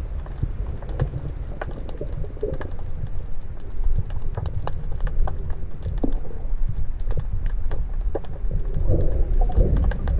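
Underwater sound picked up by a submerged camera: a steady low rumble of moving water with scattered sharp clicks and crackles, and a few gurgles near the end.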